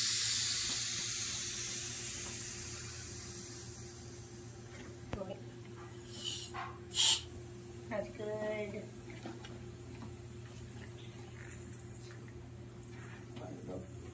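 High-pressure air hissing out at a scuba regulator's yoke connection on the tank valve, fading away over the first four seconds or so. The leak comes from a yoke nut left too loose, which the instructor takes to have popped the O-ring. A few faint clicks and handling sounds follow.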